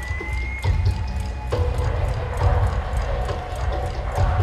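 Opening of a live rock song played over an arena PA, heard from the audience: a heavy pulsing low beat with regular high ticks. A high gliding tone rises and falls in the first second.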